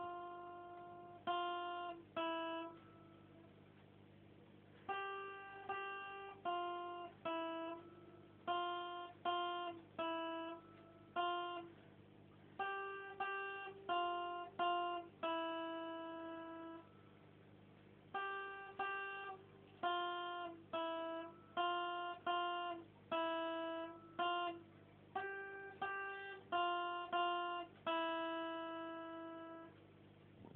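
Acoustic guitar playing a slow, simple melody of single plucked notes, each ringing briefly and fading. The notes come in short phrases, broken by a couple of pauses of a second or two.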